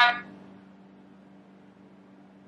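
A single short voice fragment from the Necrophonic ghost-box app on a phone, heard as "ama", right at the start, then a steady low hum.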